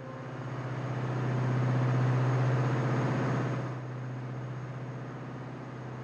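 A motor boat's engine running with a steady low hum and an even pulsing beat. It swells louder over the first two seconds and eases off a little after about three and a half seconds.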